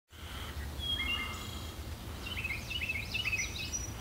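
Several songbirds calling in woodland: a few short whistled notes about a second in, then a quickly repeated chirping phrase in the second half, over a low steady rumble.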